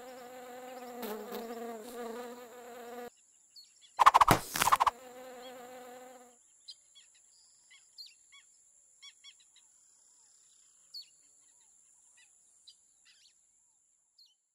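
Animated housefly buzzing sound effect: a steady pitched buzz for about three seconds that breaks off. It comes back about four seconds in under a loud burst of rapid clicks, then stops around six seconds. After that there are only faint scattered short chirps.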